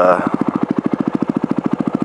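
Dual-sport motorcycle's single-cylinder engine idling with a steady, even beat of rapid low pulses.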